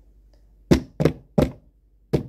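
A hand knocking on a hard surface close to the microphone: three loud thumps about a third of a second apart, starting a little before the middle.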